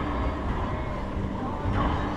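Enclosed racquetball court ambience: a steady low rumble, with a short higher sound near the end.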